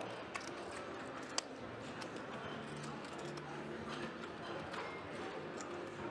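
Clay poker chips clicking now and then as players handle their stacks, one sharper click about a second and a half in, over a faint low murmur of the room.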